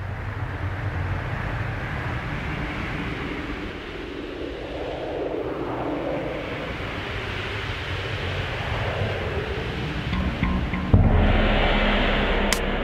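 Wind sound effect opening a drum-and-bass cover: a rushing, swirling wind noise over a low rumble that swells and eddies. About eleven seconds in, the band's deep bass comes in suddenly and louder.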